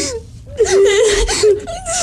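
A high-pitched voice whimpering and crying in wavering, broken sobs, starting about half a second in, with a short break just before the end.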